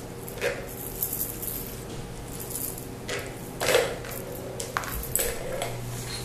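Scattered light clatters and rattles of a plastic ball knocking around inside a tiered plastic track cat toy as a kitten bats at it, several irregular hits over a few seconds.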